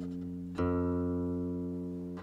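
Ming-dynasty Fuxi-style guqin with silk strings: the previous note is still dying away when a new note is plucked about half a second in, then rings on and slowly fades.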